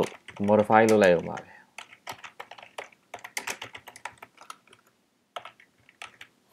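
Typing on a computer keyboard: a quick, irregular run of key clicks that thins out near the end.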